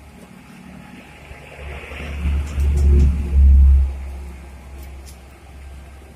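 Daihatsu Gran Max van's engine revving as the van creeps forward, rising to a loud low rumble for about two seconds in the middle, then easing back down.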